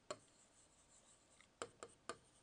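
Faint, sharp taps of a pen tip striking a board while handwriting. There is one right at the start and two close together near the end, with near silence between.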